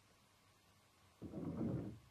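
A brief low scraping sound a little past a second in, lasting under a second, over faint steady hiss.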